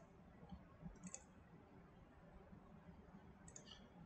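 Near silence with a few faint computer mouse clicks, one about a second in and a couple more near the end.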